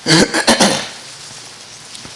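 A man clearing his throat into a handheld microphone: a few short, harsh bursts within the first second.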